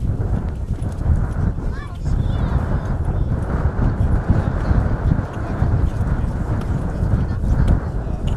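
Spades and boots thudding into loose soil as pine seedlings are tamped in, over a constant heavy low rumble, with people talking in the background.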